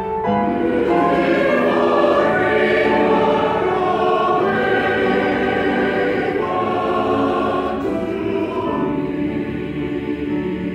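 A choir singing in harmony, many voices holding long notes together at full volume.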